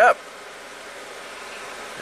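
A 2003 VW Passat's 1.8-litre turbo four-cylinder engine idling, heard from inside the cabin, just after firing up with its camshaft position sensor unplugged. It is running rough without the cam sensor.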